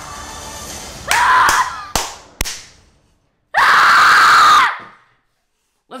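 A person screams twice in excitement, loudly: a short yell about a second in and a longer one around the middle. Before the first scream a steady soundtrack bed plays, and two sharp knocks fall between the screams.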